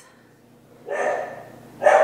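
A dog barking twice, about a second apart: alert barks at somebody out front of the house.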